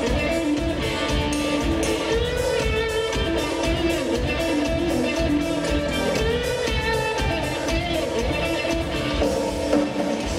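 A rock band playing live: an electric guitar plays a melodic line with gliding bent notes over bass guitar and a steady drum-kit beat.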